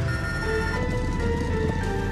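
Soundtrack music of steady held tones over the low, continuous rumble of kart and motorbike engines idling.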